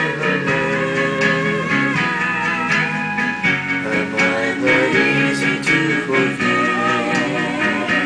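Instrumental country backing music playing on after the last sung line.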